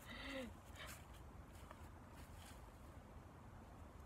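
Near silence: faint steady low rumble of outdoor background, after a short voice sound in the first half second, with a few soft clicks.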